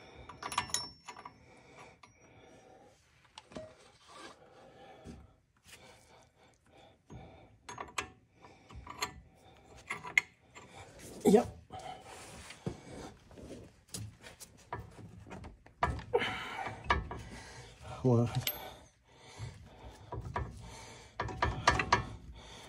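Open-end wrench working a brake line fitting on a disc brake caliper: irregular metallic clicks and taps as the wrench is fitted and pulled, with scraping and rubbing in between.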